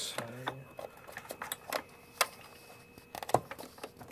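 Irregular light clicks and taps of plastic and metal parts being handled and fitted into the base of a Sanitaire commercial vacuum cleaner, with a couple of sharper clicks in the second half.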